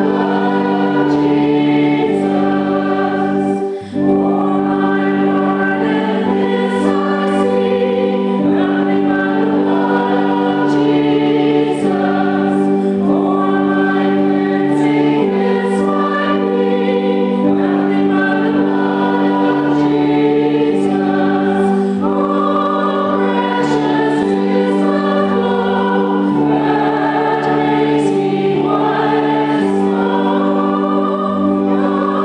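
A woman singing a hymn solo through a microphone over sustained, held accompaniment chords, with a short break between phrases about four seconds in.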